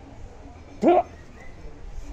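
A single short, loud yelp rising steeply in pitch, about a second in.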